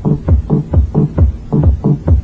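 House music from a club DJ set: a heavy, steady four-on-the-floor kick drum with a bassline, about two beats a second, with little treble.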